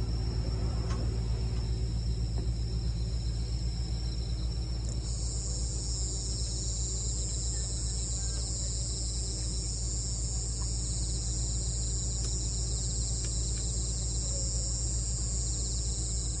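A night chorus of crickets and other insects, chirring steadily at a high pitch, with a higher band of chirring joining about a third of the way in. A steady low hum runs underneath.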